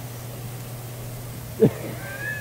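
Steady low hum with one short, sharp thud about one and a half seconds in.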